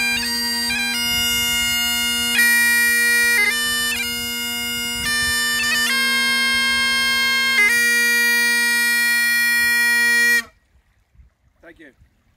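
Great Highland bagpipes playing a tune: steady drones under a changing chanter melody. All of it cuts off together about ten and a half seconds in.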